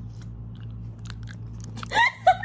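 Someone biting and chewing a mouthful of comb honeycomb: scattered small clicks and crunches over a steady low hum. A laugh starts right at the end.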